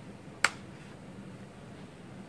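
A single sharp click as a clip of the Lenovo IdeaPad 3's plastic bottom cover snaps free while the cover is pried off the chassis.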